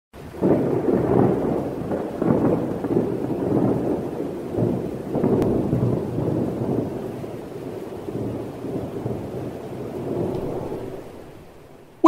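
A thunderstorm: rolling rumbles of thunder with rain, swelling and ebbing, then fading out over the last few seconds.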